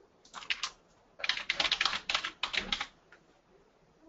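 Typing on a computer keyboard: three quick runs of keystrokes over about three seconds as a word is typed, then the typing stops.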